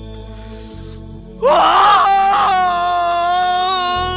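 A man's anguished wail over a low steady musical drone. It begins suddenly about a second and a half in, wavers and breaks, then holds as one long high note.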